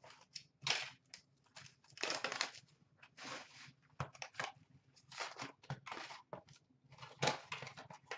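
Plastic shrink-wrap being torn and peeled off a sealed trading-card box, with crinkling plastic and cardboard rubbing, in short irregular bursts.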